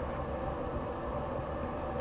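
Steady low background hum of room noise, unchanging throughout.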